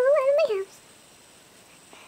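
A woman's voice, made high-pitched by speeding up the footage, gives a wordless whine that ends about half a second in; then only quiet room tone.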